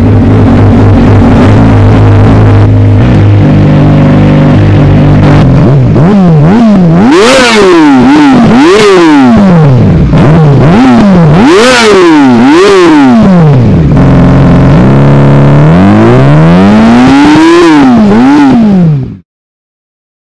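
Yamaha R6 inline-four engine through an Akrapovic GP slip-on exhaust. It idles steadily, then is blipped through a run of quick revs from about six seconds in. After a brief return to idle comes one longer rev with two peaks, and the sound cuts off shortly before the end.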